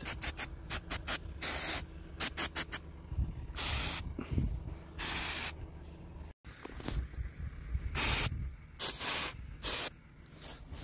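Aerosol can of WD-40 spraying in bursts: a quick run of short puffs, then several longer squirts of hiss. The penetrating oil is going onto rusted, seized guy-wire fittings to loosen them.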